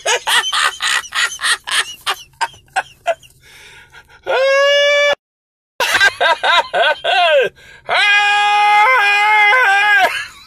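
A man laughing loudly in quick bursts, broken by two long held yelling cries: one about four seconds in, and one through the last two seconds whose pitch steps up twice.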